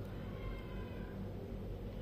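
A faint, high-pitched animal call, under a second long, in the background over a low, steady room hum.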